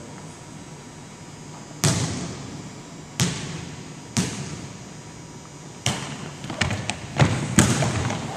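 A volleyball being hit and bouncing on a hardwood gym floor: about six sharp smacks at irregular intervals, the last few close together near the end, each echoing in the large hall.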